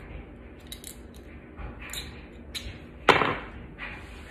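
Small clicks and ticks of a razor blade being worked off a bread-scoring lame by hand, then one sharp knock about three seconds in, the loudest sound.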